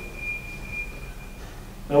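A pause in a man's speech: room tone with a low hum and a thin, steady high-pitched tone that fades out about one and a half seconds in. The man's voice starts again at the very end.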